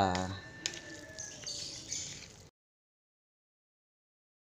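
Faint clicks and scraping of a metal spoon stirring a soft ground-meat and tofu filling in a plastic bowl. The sound cuts out completely about two and a half seconds in.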